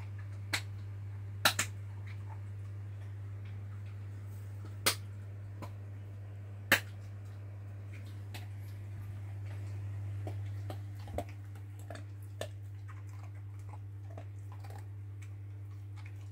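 A steady low hum with sharp, isolated clicks scattered through it, about seven in all, the loudest in the first seven seconds.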